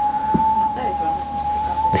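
Wind whistling through a gap in the caravan, one steady high whistle.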